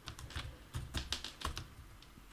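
Computer keyboard being typed on: a quick run of about half a dozen separate keystrokes, typing out one short word.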